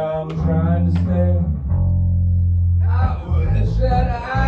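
Live band music in a club, carried by loud, deep, held bass notes; near the middle a low note sounds almost on its own for about a second before the other parts come back in.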